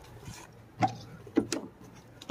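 A few short clicks and knocks from an RV's exterior storage compartment door being unlatched and swung open, one about a second in and two more about half a second later.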